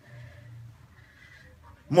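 A short pause between a man's spoken sentences: a faint low voiced sound in the first second or so, then quiet room tone, with his voice starting again right at the end.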